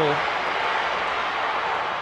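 Steady crowd noise from a football stadium audience during a live play.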